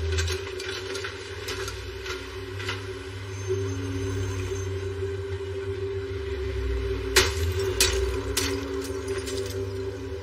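Film soundtrack with a sustained low drone. Sharp knocks and clicks are laid over it, the loudest a cluster about seven to eight and a half seconds in.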